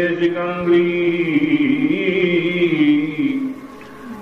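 A man chanting Sanskrit devotional verses in a slow, melodic recitation, holding long notes that bend gently in pitch. The voice breaks off about three and a half seconds in.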